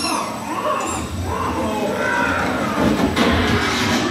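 Dark-ride show soundtrack through the theatre speakers: music and sound effects as the projected gum monster is defeated, with a deep rumble and a sudden surge a little after three seconds.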